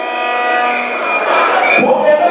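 A voice singing long held notes over music, the kind of vocal track played from a dubplate on a sound system; a note bends upward near the end.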